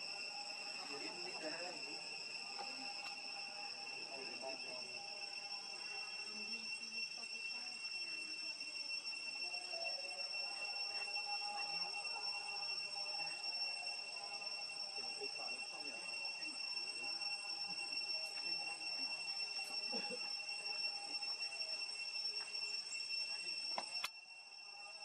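A steady, high-pitched insect drone runs without a break, with faint voices underneath.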